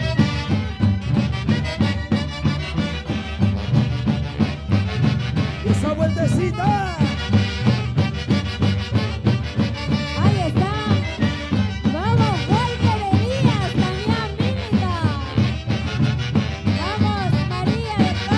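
Live Andean Santiago music from a saxophone orchestra: a section of saxophones plays the melody over a steady pounding drum beat. From about six seconds in, repeated rising-and-falling sliding tones join in over the band.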